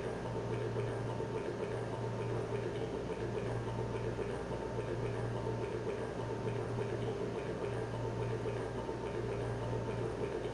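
A steady low hum over a faint hissing noise, with a faint soft tick repeating about twice a second.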